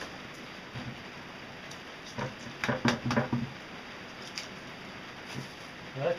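Light rustling and scattered soft clicks from hands handling loose ground styrofoam and a woven plastic sack, with a short cluster of knocks and rustles about two to three seconds in.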